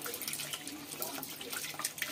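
Tap water running into a stainless steel sink as carrots are rubbed clean under the stream, with irregular small splashes.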